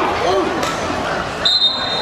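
People talking and calling out, then one short, steady referee's whistle blast about one and a half seconds in.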